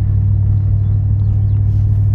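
Steady low drone of a car's engine and running gear, heard inside the cabin.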